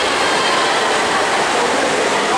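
Steady, echoing splashing of several swimmers racing in an indoor pool, an even wash of water noise that fills the hall.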